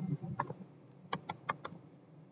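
Keystrokes on a computer keyboard: about five light, separate taps within a second or so, typing a short search word.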